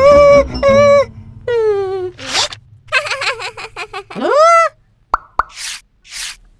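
Cartoon sound effects and wordless cartoon-character vocalizations: short high-pitched voice exclamations, then a rising glide, two quick pops about five seconds in, and a short whoosh near the end.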